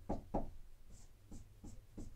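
Dry-erase marker writing on a whiteboard in a run of short, quiet strokes.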